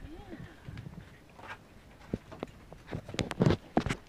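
A short rising-and-falling puppy whine at the start, then a run of sharp knocks and taps that grow denser and loudest near the end.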